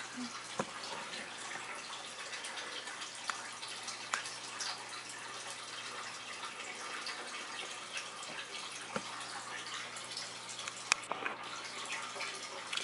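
Aquarium water circulating with a steady trickle and drip, broken by faint scattered ticks.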